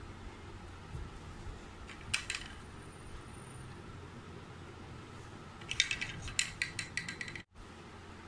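Plastic kulfi mould lids being pressed onto a plastic mould tray: a few clicks about two seconds in, then a quick run of plastic clicks and taps near the end, over a steady low hum.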